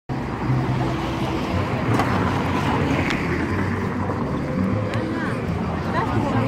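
Busy city street ambience: steady traffic noise with voices of people nearby.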